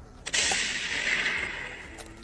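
A sudden burst of hissing noise starts about a third of a second in and fades away over about a second and a half.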